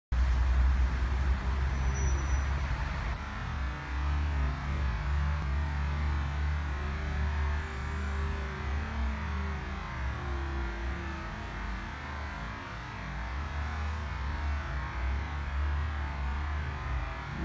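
Steady low outdoor rumble with a fainter hiss above it.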